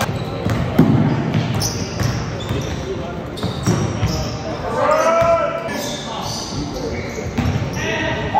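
Basketball game sounds in a large gym: sneakers squeaking on a hardwood floor and a basketball bouncing, with a player's voice calling out about five seconds in.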